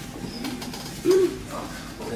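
A single short hummed "mm" from a person's voice about a second in, rising and then falling in pitch.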